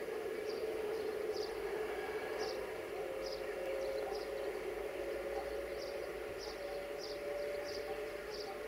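A train of coupled electric locomotives passing slowly, giving a steady hum with a faint steady tone joining about three seconds in. Short high chirps repeat irregularly, about once or twice a second, over it.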